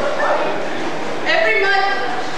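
A woman's raised voice over a handheld microphone, getting louder and higher from a little over a second in.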